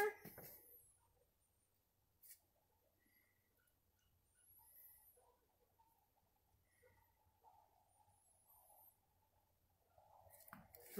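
Near silence, with faint high chirps of a bird twice, about halfway through and near the end, and one faint tap a couple of seconds in.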